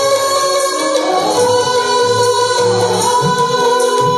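A group of women singing together in unison, with long held notes that bend in pitch, over instrumental accompaniment.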